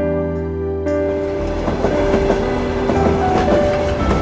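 A train running on rails fades in about a second in: a noisy rumble with irregular clicking of wheels over the rail joints, laid under slow, gentle instrumental music.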